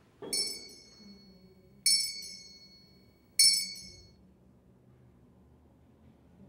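Altar bell rung three times at the elevation of the host after the words of consecration, each stroke ringing out clear and high before dying away, about a second and a half apart.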